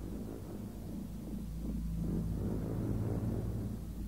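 Low, steady rumble with a faint held hum, growing a little louder toward the middle.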